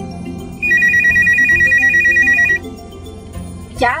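Telephone ringing: one electronic ring, a rapid trill on two high tones, lasting about two seconds.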